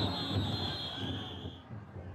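Taikodai festival float with its big drum beating in slow, even strokes under crowd noise, and a long shrill whistle held until near the end; the sound dies down in the last moments.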